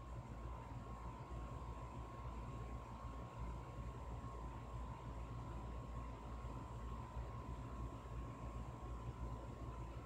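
Steady background room noise: a low hum with a faint constant high whine over a soft hiss, unchanging throughout.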